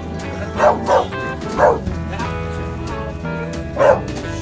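Beagles barking: four short barks, three in the first two seconds and one near the end, over steady background music.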